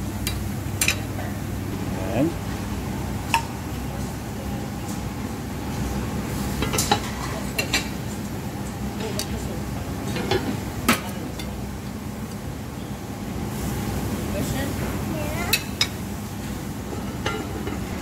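Metal serving spoon scooping food and clinking against an enamelled cast-iron pan and a ceramic plate, a sharp clink every few seconds, over a steady low hum and background chatter of a dining room.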